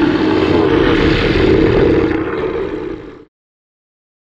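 Movie-style Tyrannosaurus rex roar sound effect: one long, loud roar that dies away about three seconds in.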